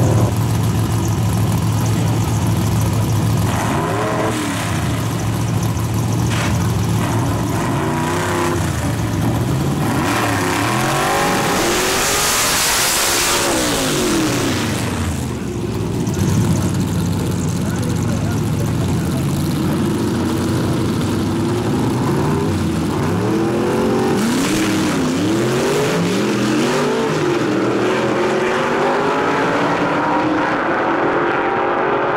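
Gasser drag cars' engines running loud, revved up and down again and again in rising and falling sweeps over a steady engine drone, with a longer hard run of high revs about twelve seconds in.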